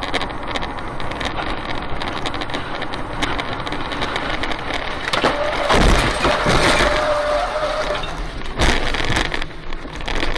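Car noise with a steady rumble and many small rattles and clicks. A loud crash comes about six seconds in, with a held tone for a few seconds around it, and another heavy thump near the end.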